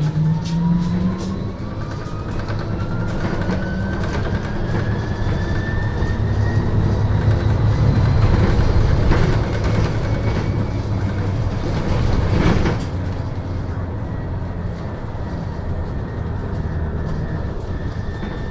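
Electric traction motor of a MAN Lion's City Hybrid bus whining, heard inside the cabin: the whine rises steadily in pitch as the bus accelerates, then holds level, over a steady low rumble of the running bus. A brief clatter about twelve and a half seconds in.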